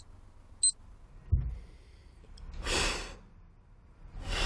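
Two short, high electronic beeps a little over half a second apart, a soft low thump, then a man's long sighing exhale.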